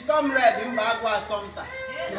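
Speech: a person talking, with no other sound standing out.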